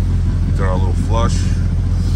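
12-valve VR6 engine idling steadily, freshly repaired and not yet filled with coolant, heard from the driver's seat with the hood open.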